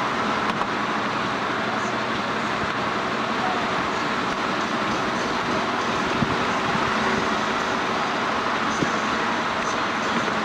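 Steady road noise from a moving car: tyre roar, engine hum and wind, heard from inside the car, with a few small ticks.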